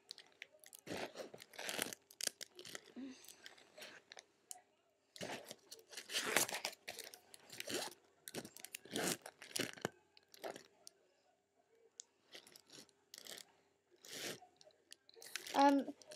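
Plastic sleeve pages of a trading-card binder crinkling and crackling as they are turned and handled, in short irregular rustles, with a faint steady hum underneath.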